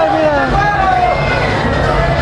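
A high-pitched voice over a loudspeaker, its pitch swooping up and down in long glides, over a steady low background hum.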